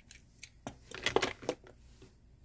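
Small clicks and taps of a die-cast toy truck being lifted off a rubber display base and set into a clear plastic display case, busiest about a second in.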